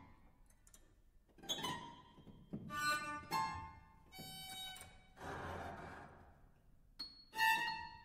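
Avant-garde piano music played inside the piano without the keys: a string of separate gestures, some noisy rushing scrapes, others ringing metallic pitched tones, with a sharp struck attack near the end that rings on in several tones.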